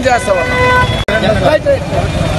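A vehicle horn sounds one steady note for under a second early on, over a constant rumble of street traffic.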